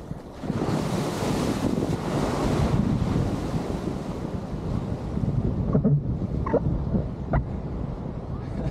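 Rushing water and breaking surf as a foil board rides a small wave, with wind buffeting the camera's microphone. The hiss of whitewater is loudest in the first few seconds, settling to a lower rush with a few short sharp splashes near the end.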